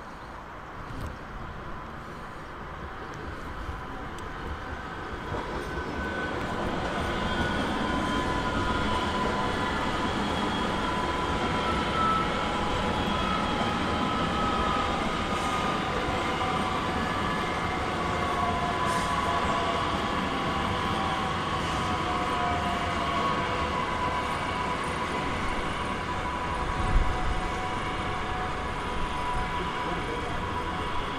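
A red DB Regio electric multiple unit passing on the tracks. It grows louder over the first several seconds into a steady rumble of wheels on rail, with its electric drive whining in several tones that slowly fall in pitch. A single sharp knock comes near the end.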